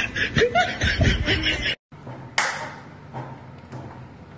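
Laughter and a spoken word that cut off abruptly. Then a sharp metallic scrape as a tool is forced into a tin can's lid, followed by a few fainter scrapes.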